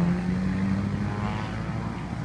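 A 250 cc motor scooter's engine running at a steady cruise, a low steady drone that eases off slightly after about a second.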